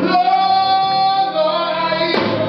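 Live blues band playing, with a long high note held for about a second over the accompaniment, then moving to a slightly lower note.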